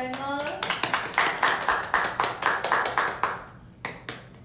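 A few people clapping their hands together in a short round of applause, about five claps a second, ending a little over three seconds in.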